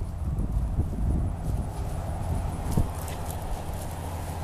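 Footsteps on a dirt path strewn with pine needles and leaves, with an occasional louder thump.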